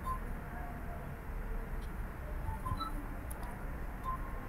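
Low steady hum and background noise of a video-call microphone, with a few faint short clicks about two and three seconds in.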